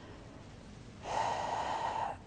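A man's audible breath, about a second long, drawn in close to a clip-on microphone about a second in, after a quiet pause.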